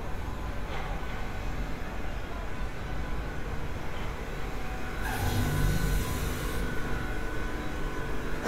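Steady low rumble of outdoor city background noise, with a burst of hissing about five seconds in that lasts a second or two.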